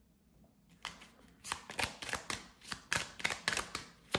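A deck of tarot cards being shuffled by hand. After a quiet first second it gives a quick run of card slaps and flicks, about four a second.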